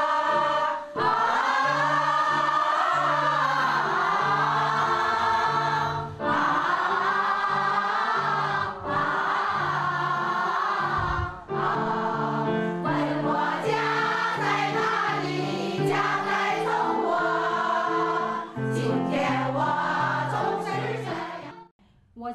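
A women's choir singing together to electronic keyboard accompaniment, the long held notes wavering with vibrato over steady keyboard chords and bass notes. The singing pauses briefly between phrases every few seconds and stops just before the end.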